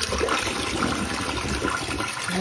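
Toilet flushing: a steady rush of water draining out of the bowl.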